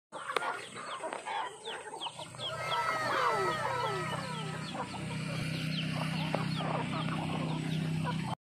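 A flock of young chickens clucking and calling as they feed, many short calls overlapping, with a burst of falling calls about three seconds in. A steady low hum joins about halfway through.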